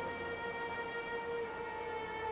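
Slow background music of long held string notes, the melody moving to a new note about one and a half seconds in.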